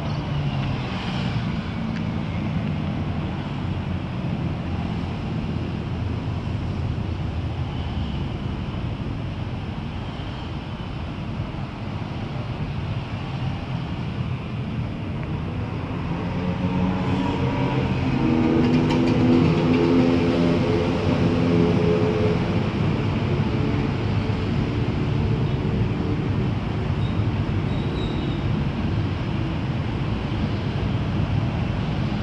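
A steady low engine hum with pitched lines. It grows louder for several seconds past the middle, then eases back a little.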